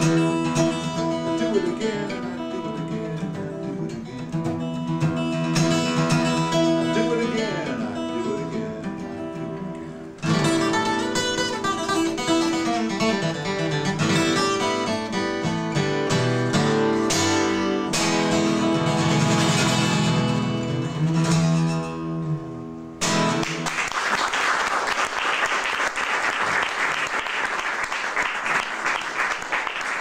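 Solo steel-string acoustic guitar playing the closing instrumental passage of a song. About 23 seconds in, the guitar stops and applause from a small audience takes over to the end.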